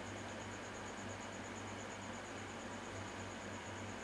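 Room tone: a steady hiss with a low hum, and no distinct sound.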